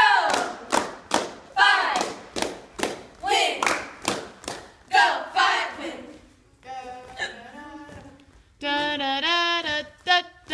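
A squad of cheerleaders chanting a cheer together, punctuated by sharp hand claps. Near the end the chant turns into a held, sung line from several voices.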